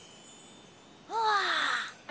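Cartoon magic sound effect: a short, shimmering chime whose tone rises briefly and then falls. It starts about a second in and lasts under a second, as the dino disc appears in the boy's hand.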